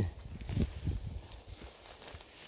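Footsteps on dry pine-needle and leaf litter on a forest floor: a few uneven steps, most of them in the first second.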